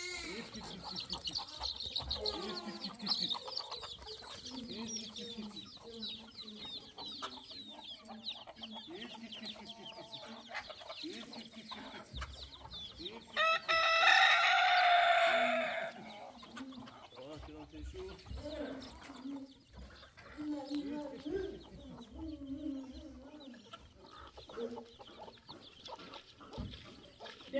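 A flock of chickens clucking around a coop, with rapid high peeping from chicks through the first half. About halfway through a rooster crows loudly for about two seconds.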